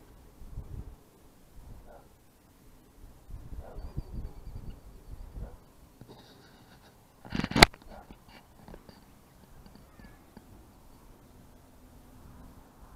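Fingers rubbing and fumbling on a small handheld camera close to its microphone, with a sharp knock about seven and a half seconds in.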